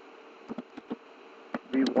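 Computer keyboard keys being typed, about five separate short clicks, over a steady low background buzz.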